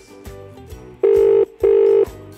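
Telephone ringback tone from a desk phone: one double ring, two short steady beeps about a second in, the British-style ringing pattern that shows the call is ringing at the other end and not yet answered.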